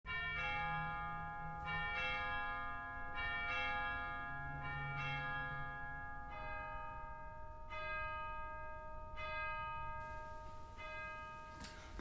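Bells ringing a slow sequence of notes, about one strike a second, each note ringing on into the next.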